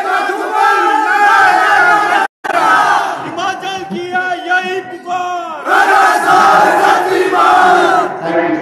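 Crowd shouting slogans together, many voices at once in loud stretches. The sound cuts out for a moment about two seconds in.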